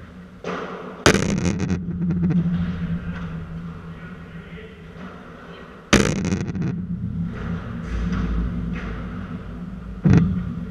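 Padel rally: sharp ball impacts, the two loudest about a second in and near six seconds, each ringing on with a rattle and the hall's echo. A steady low hum runs underneath.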